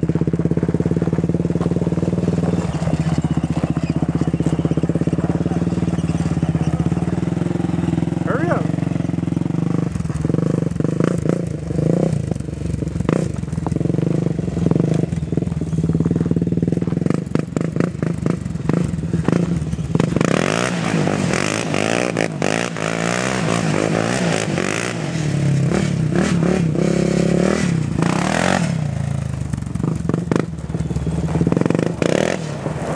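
Honda 400EX ATV's single-cylinder four-stroke engine running steadily. About two-thirds of the way in it starts revving up and down, with gravel spraying and crunching under the spinning rear tires.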